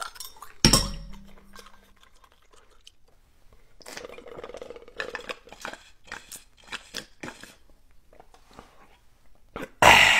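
Drinking soda from a glass Coca-Cola bottle: a sharp knock about a second in, a run of gulps and swallows from about four to seven seconds, then a loud breathy exhale at the end.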